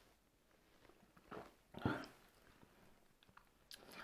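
Quiet mouth and throat sounds of a man swallowing a shot of vodka: two short sounds about a second and a half and two seconds in, then faint clicks near the end.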